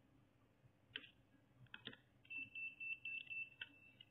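Faint clicks of a screwdriver working a terminal screw on a miniature circuit breaker. In the second half comes a thin, high, steady tone lasting about a second and a half.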